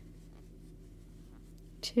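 Faint soft rubbing of a crochet hook pulling plush polyester chenille yarn through a single crochet stitch, over a steady low hum.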